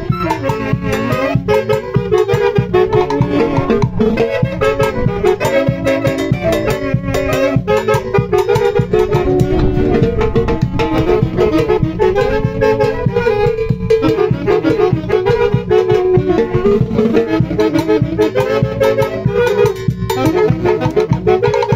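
A live band playing dance music: a melody line carried over a steady, busy drum-kit beat, with no breaks.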